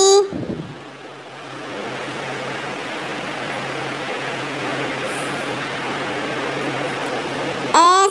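Steady rushing noise with a faint low hum underneath, swelling in over the first second or two and then holding level.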